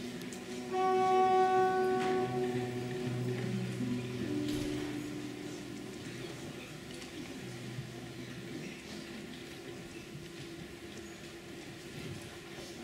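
Bowed string instruments sounding a few loose held notes. A clear high note with strong overtones comes in about a second in and lasts a second or two, then lower cello notes follow, and the sound thins out to faint stage noise.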